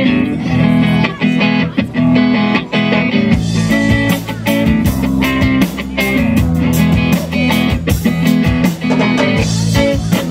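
Live rock band playing a song's opening: electric guitar strumming over bass guitar, with the drums and cymbals coming in about three seconds in.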